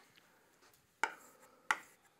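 Chalk tapping and scraping on a chalkboard: two sharp strikes, about a second in and near the end, as the two strokes of an X are written.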